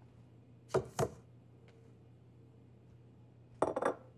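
Kitchenware handled on a wooden countertop: two short knocks about a second in, then a glass bowl set down with a brief clatter near the end.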